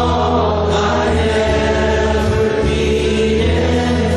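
Slow worship song sung by a group of voices with instrumental accompaniment, the voices holding long notes over sustained bass notes.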